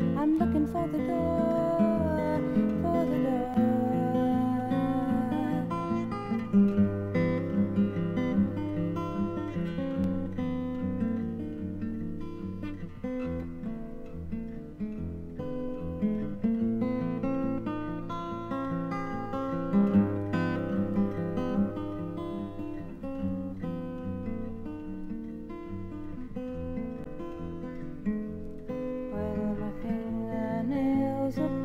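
Acoustic guitar playing an instrumental passage of a folk song between sung verses, with a low bass line under the picked and strummed chords.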